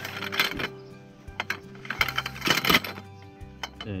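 Segmented steel tarp poles clinking and clattering against one another as they are slid out of their bag and laid down, with clusters of metal clinks near the start and again about two and a half seconds in. Background music plays under it.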